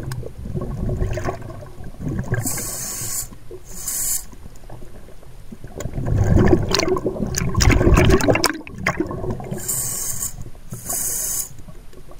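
Underwater water noise: turbulent sloshing and bubbling around the camera, busiest in the middle, with four short hissing bursts, two a few seconds in and two near the end.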